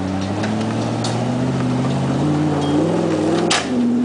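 Off-road 4x4's engine revving hard under load as it climbs a steep dirt bank, the pitch rising over the second half. A sharp knock comes about three and a half seconds in, just before the engine eases off.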